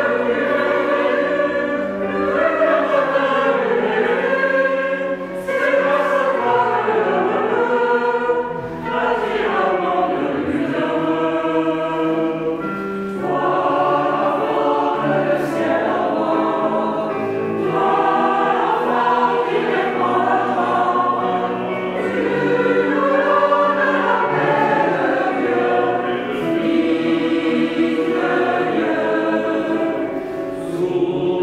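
Mixed choir of men and women singing a French Christmas song in several parts, in continuous phrases with short breaks between them.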